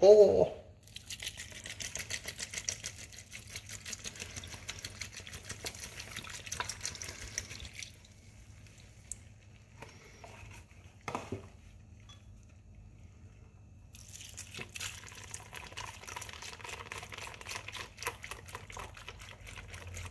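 Beef broth being poured from a carton into a steel stockpot of chopped cabbage, in two long pours: one for the first several seconds, then after a quieter pause with a single knock, a second pour through to the end.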